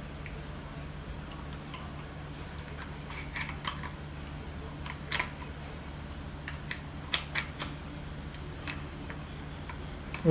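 Scattered light plastic clicks and handling knocks as a phone in its case is pressed and slid into the spring clamp of a DJI Mavic Mini remote controller, over a steady low hum.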